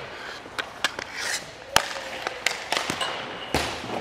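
Hockey stick and puck on ice: a run of sharp clicks and knocks as the puck is handled and shot on the goalie and stopped, the loudest crack a little before halfway. Skate blades scrape the ice briefly about a second in.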